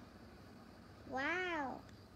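A single meow, rising then falling in pitch, lasting a little over half a second about a second in.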